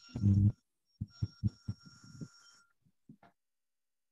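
A series of short, low buzzing thumps, loudest in the first half second, then several shorter ones over a faint steady high whine, dying away well before the end.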